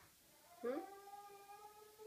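A young child's long, whiny "hmm" of protest, swooping up at the start and then held on one pitch for over a second.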